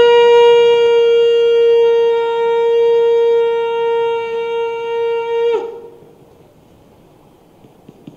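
Conch shell (shankha) blown in one long, steady, loud note that cuts off with a slight drop in pitch about five and a half seconds in.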